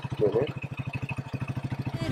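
Small motorcycle engine idling with a steady, rapid putter of about a dozen pulses a second, and a brief voice about a quarter second in.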